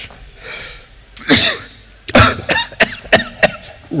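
A man coughing into a handheld microphone: a run of short coughs, several in quick succession from about a second in.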